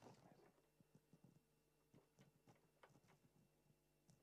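Near silence: room tone with a faint hum and a few faint, scattered clicks.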